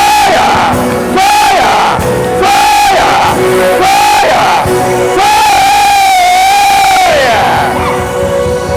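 A high-pitched voice screaming in a string of short rising-and-falling cries about a second apart, then one long held scream that falls away near the end, over steady background keyboard music.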